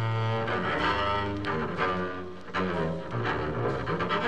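Small-group jazz recording in which a double bass played with the bow carries long, sustained low notes, with other instruments sounding behind it.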